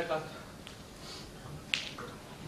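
A single sharp click near the end, after a faint tick earlier on, in a pause between a man's spoken lines.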